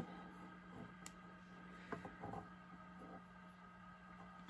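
Very quiet: a faint steady hum with a few soft clicks from an egg being handled and turned against a candling light, near the start and about two seconds in.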